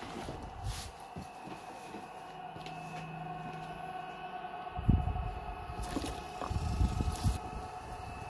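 Steady hum of bees from a hive in the shed wall, with a few low thumps from handling and footsteps about five seconds in and again near the end.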